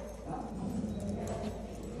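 Faint sounds of a group of dogs moving about, with scattered light clicks.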